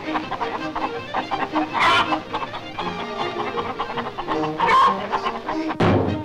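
Cartoon hens squawking and clucking in alarm over orchestral score, with two loud squawks about two and five seconds in. A single sharp crash comes near the end.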